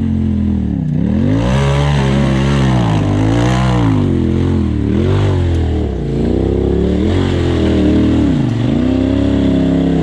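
Turbocharged Polaris RZR engine in a tube-chassis side-by-side, revved up and down over and over, about once a second, as it climbs a steep rock ledge under load.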